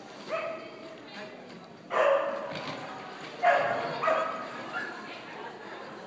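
A dog barking in short, separate bursts, about four of them, with voices mixed in.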